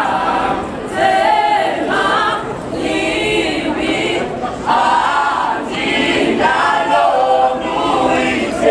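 A cappella choir of young men and women singing, in short phrases with brief dips between them.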